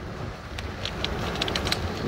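Storm wind and driving rain: a steady low rumble of wind with a scatter of small ticks from rain striking the window glass.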